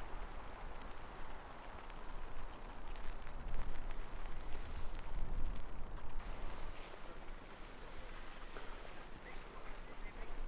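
Footsteps on a forest floor thinly covered with snow and needle litter, with a steady low rumble underneath.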